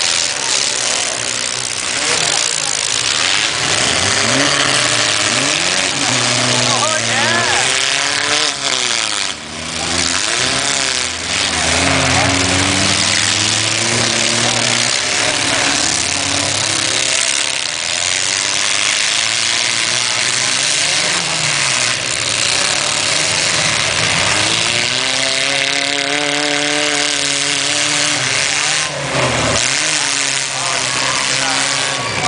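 Several compact demolition derby cars' engines revving hard, their pitch rising and falling again and again as they push and ram one another on the dirt track.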